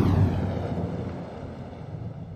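A whoosh transition sound effect: a swell of rushing noise with a faint falling sweep, fading away steadily over about two seconds.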